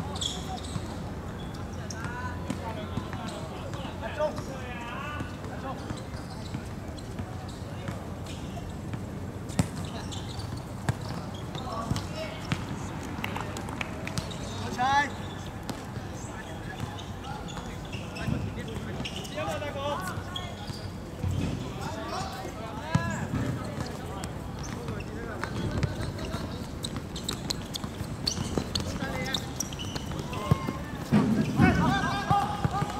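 Players' shouts and calls across a football pitch, with scattered sharp thuds of the ball being kicked and a steady outdoor background.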